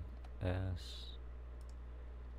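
A few light clicks from a computer keyboard and mouse as shortcut keys are pressed, over a steady low hum.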